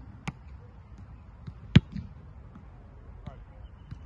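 A punter's foot striking an American football in a punt: one sharp, loud thud just under two seconds in, with a fainter knock shortly after the start.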